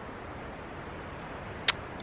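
Steady outdoor background hiss with one brief sharp click near the end.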